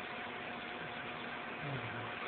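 Steady hiss of an old cassette lecture recording during a pause in the talk, with a faint thin steady tone running under it.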